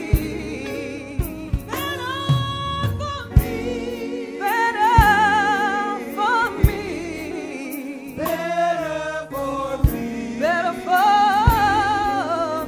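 Gospel singing: a woman sings lead in long phrases with wide vibrato, over sustained backing harmonies, with a few low thuds now and then.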